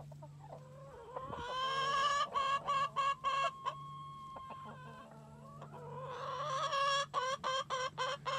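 Chickens clucking and calling in two long runs of repeated pitched calls, the first beginning about a second in and the second building near the end, with one call held steady for over a second in between.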